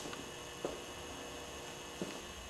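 Faint, steady electrical hum of room tone, with a small click about two-thirds of a second in.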